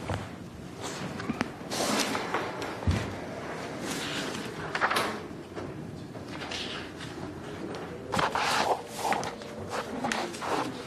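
Handling and moving-about noise in a large hall with a room echo: scattered knocks and clicks, one dull thump about three seconds in, and indistinct voices.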